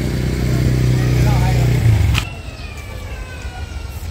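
An engine running with a steady low hum, swelling briefly and then cut off abruptly about two seconds in, leaving quieter open-air background.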